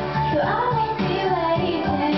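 A woman singing a pop song into a microphone, amplified over a backing track with a steady beat; her voice glides and wavers in pitch.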